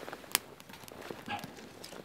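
Small wood fire crackling in a camp stove, with a sharp pop about a third of a second in and a few fainter clicks, while things are handled beside the stove.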